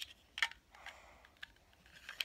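A few light clicks from a small green plastic magic coin-trick box being handled, the sharpest about half a second in, with soft handling noise between.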